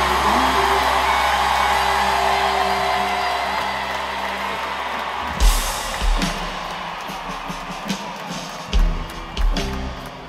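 Live band music with audience cheering and whoops: a held chord with bass fades out over the first few seconds, then about five seconds in, sparse heavy drum and bass hits begin, a few seconds apart.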